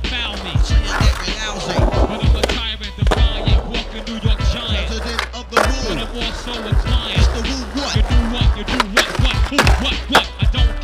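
Skateboard wheels rolling on concrete, with the sharp clack of the board popping and landing, over hip-hop music with a steady beat.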